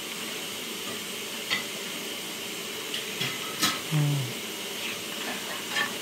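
Pages of an old paperback almanac being turned by hand: soft paper rustling with a few light flicks, over a steady hiss. A brief low hum comes about four seconds in.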